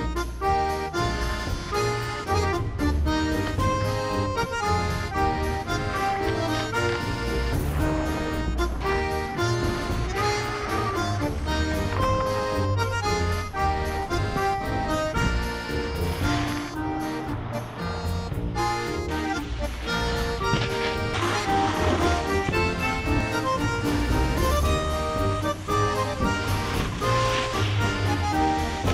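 Background music: a melodic track with many held notes over a steady pulsing bass line.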